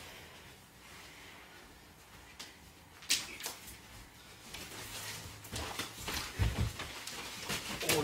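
Two people wrestling: faint scuffling at first, then a sharp knock about three seconds in, followed by scattered knocks, shuffling and a heavier thump of bodies a little past six seconds.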